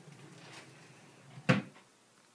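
Items being rummaged in a wooden bedside cabinet, then one sharp wooden bang about one and a half seconds in as the cabinet is shut.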